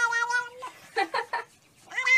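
Tabby cat meowing close to the microphone. A long drawn-out meow ends about half a second in, three short meows follow around a second in, and another long meow begins right at the end.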